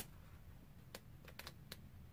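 Near silence with four faint, short clicks in the second half, from books being handled.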